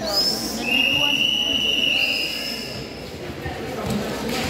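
Whistles blown in long, steady, shrill blasts, two pitches at once for about a second, over a murmur of voices.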